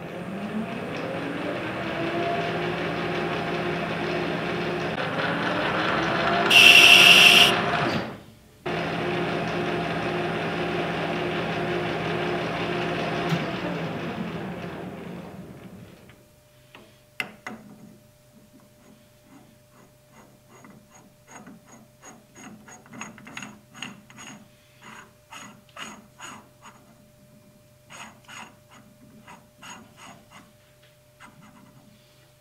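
Metal lathe spinning up and running steadily with a workpiece in its four-jaw chuck, with a loud high-pitched screech for about a second and a half some six seconds in. It runs on after a brief break and then winds down to a stop. After that come light metallic clicks and knocks as the part and chuck are handled.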